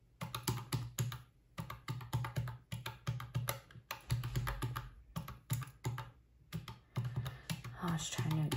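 Quick, irregular clicks of desktop calculator keys being pressed as a column of figures is added up.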